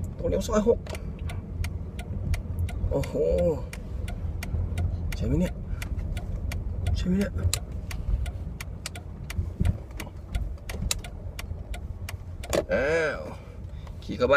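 Low steady rumble inside a car cabin, with many scattered sharp clicks and a baby's short babbling sounds every few seconds, loudest near the end.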